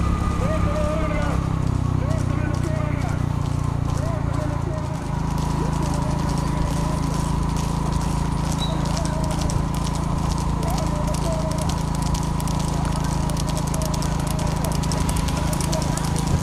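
Hooves of trotting horses clattering on an asphalt road as rekla racing carts close in, the hoofbeats growing denser toward the end, over a steady engine hum.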